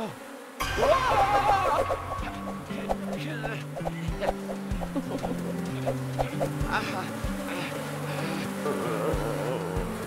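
Cartoon sound effect of a swarm of bees buzzing, with a line of low held tones that step in pitch. About a second in there is a short pained vocal cry.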